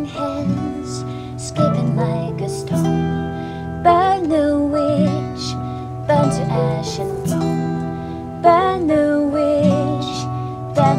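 Acoustic band music: acoustic guitar strumming with piano, and a tambourine struck about once a second. Long held sung notes rise and sustain over the chords.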